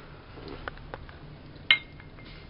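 Aerosol deodorant can and its cap being handled on a tiled floor: two faint knocks, then a sharp clink near the end with a brief ringing tone after it.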